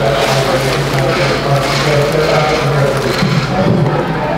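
Ice cubes tipped from a bag into a barrel of ice water, a loud rattling and sloshing, over a steady low hum.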